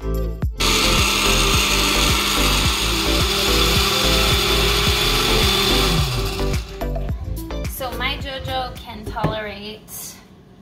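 Countertop blender running at full speed, grinding millet grain, pears and water into a batter, for about six seconds; then it is switched off and its motor winds down with a falling whir.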